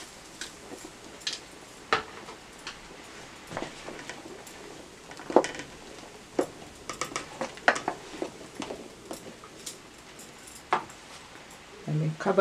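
Wooden spoon stirring meat and sauce in a large aluminium pot, giving irregular knocks and scrapes against the pot, the loudest about five seconds in. Under them runs the low steady sound of the pot simmering.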